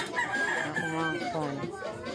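A rooster crowing once, a long crow, with people talking in the background.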